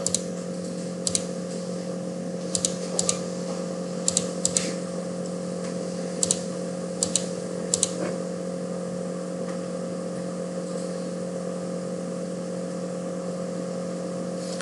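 Computer mouse clicking: sharp clicks, often in quick pairs, scattered through the first eight seconds, then stopping. A steady low electrical hum runs underneath.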